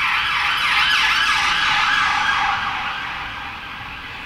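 Emergency-vehicle siren going by, its pitch sweeping quickly up and down over and over, growing fainter toward the end.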